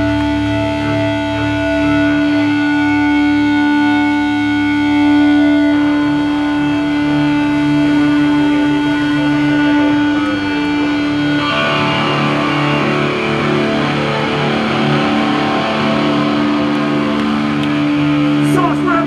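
Distorted electric guitars held ringing through the amps, with long steady feedback-like tones. About eleven seconds in, a rougher, noisier wash of guitar sound joins them.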